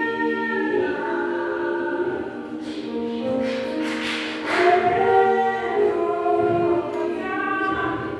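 Choir singing slow, sustained chords: several voices holding long, overlapping notes that shift pitch every second or two, with a breathy hiss swelling about four seconds in.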